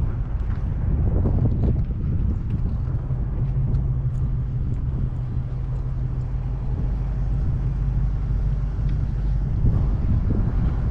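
Wind blowing across the camera microphone, a steady low rumble.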